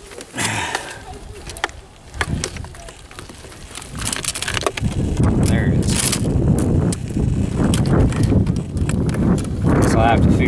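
A small steel scale chain clinks and clicks as fingers hook it back onto the body of an RC crawler truck. About halfway through, a loud, uneven low rumble comes in and stays.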